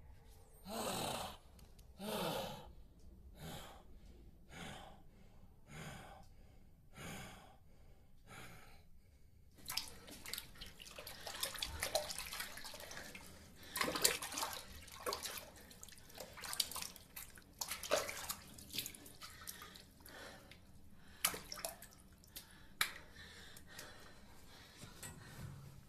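Water running from a tap into a sink with irregular splashes, some sharp, starting about ten seconds in. Before it comes a run of short bursts about one a second that fade away.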